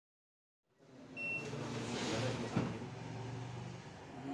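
Silence, then about three quarters of a second in a steady low hum of indoor room ambience fades in. A brief high beep comes about a second in, and a single sharp knock at about two and a half seconds.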